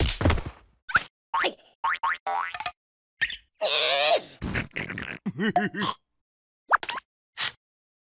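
Cartoon sound effects in quick succession: a thump, then springy boings, the longest a wobbling boing about five seconds in, mixed with short squeaky gibberish cries from the cartoon larvae, with brief silences between.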